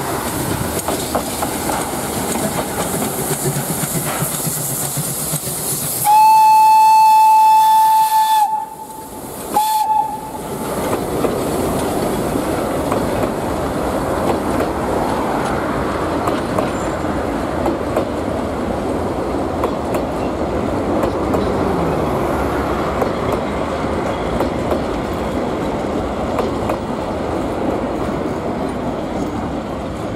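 Px29-1704 narrow-gauge steam locomotive sounding its steam whistle: one long blast of about two and a half seconds some six seconds in, then a short second toot. Its coaches roll past steadily on the rails throughout.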